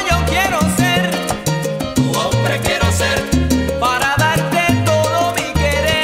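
Salsa music: a full band with a stepping bass line, steady percussion, and wavering, sliding melodic lines above.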